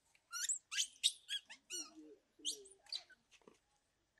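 A bird chirping a rapid series of short, high, sweeping calls in two bursts, with a brief pause between them.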